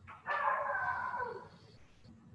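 A drawn-out animal call in the background, lasting just over a second, that falls in pitch at its end.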